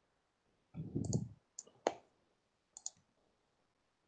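Computer mouse clicking: a few short, sharp clicks, a pair about a second in, another just before two seconds and a quick double click near three seconds, with a faint low thump under the first pair.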